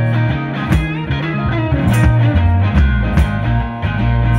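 Live blues-rock music with no vocals: amplified guitar over a heavy, sustained bass line, with a sharp percussion hit about every second and a quarter.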